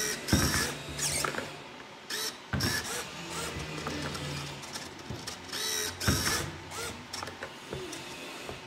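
Small hobby servo motors of a tomato sorting machine whirring in several short bursts, each with a rising and falling gear whine as the arms swing. Sharp knocks come in between as tomatoes drop and roll on the board chute.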